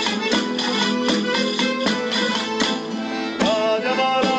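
Live Spanish folk jota played by a folk ensemble of guitars and other plucked strings, with a steady rhythm of sharp percussive strokes. A long held melodic note comes in near the end.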